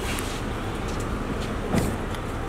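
A car engine idling close by, a steady low rumble, with one short, loud sound near the end.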